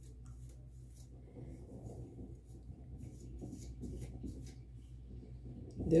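A wide-tooth comb drawn through coily natural hair, giving faint, irregular scratchy strokes.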